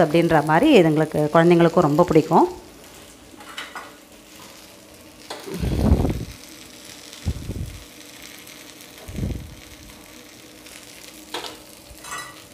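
A voice for the first two seconds or so, then paniyaram balls sizzling gently in oil in a kuzhi paniyaram pan on a gas burner, with a few dull low thumps in the middle.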